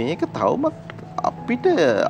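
A man talking, with a few steady notes of background music held under the speech for about the first second and a half.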